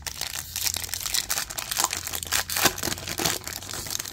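Trading-card pack wrapper being torn open and crinkled by hand: a dense, continuous crackle of many small clicks.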